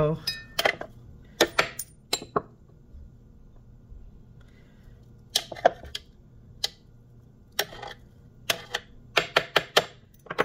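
Metal measuring spoon scooping mushroom powder from a jar and tapping against the plastic bowl of a food processor: a string of sharp clicks and clinks in small clusters, with a quieter stretch of a few seconds in the middle.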